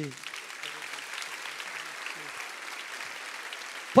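Church congregation applauding, a steady, even clapping that holds throughout.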